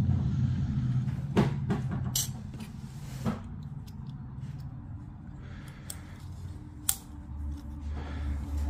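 Handling of a loose circuit board over a plastic radio chassis: a handful of sharp clicks and taps, spread over several seconds, over a low steady hum that slowly fades.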